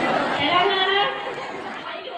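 Speech only: a woman talking into a microphone, with crowd chatter beneath. It fades away over the last second.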